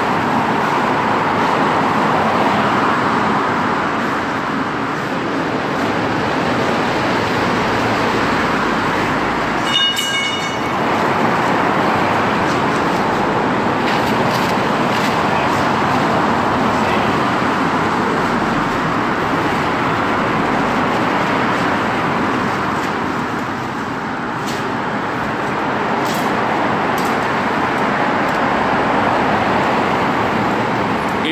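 Steady road traffic passing close by on a busy multi-lane road, its tyre noise swelling and ebbing as vehicles go past. A short horn toot sounds about ten seconds in.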